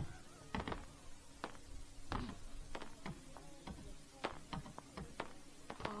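Aerial fireworks bursting: faint, irregular sharp pops and crackles, several a second at times.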